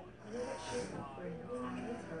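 Faint, indistinct voices with no clear words.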